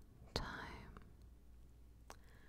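A woman whispering close to the microphone: a single whispered word, starting with a soft click about a third of a second in, then a pause with only faint background hum.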